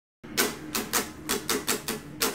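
Hollow-body electric guitar strummed in a choppy, percussive rhythm of about four strokes a second, starting about a quarter second in.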